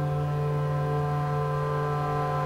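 ASM Hydrasynth playing a cinematic ambient pad patch: a held, unchanging chord with a strong low drone and several steady upper tones.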